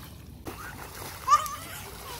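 Swimming-pool water splashing and sloshing as people play in it, with a short child's shout about a second and a half in.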